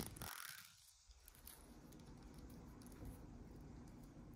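Near silence: faint room tone, with one small click at the very start.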